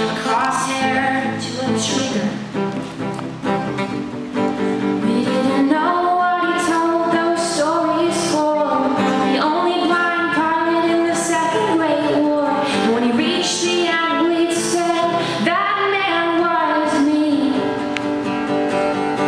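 A woman singing into a microphone while strumming an acoustic guitar, a live solo performance.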